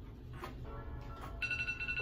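Phone timer alarm going off as the countdown ends: a ringtone of short electronic tones starting about half a second in, settling into a steady high tone in the second half.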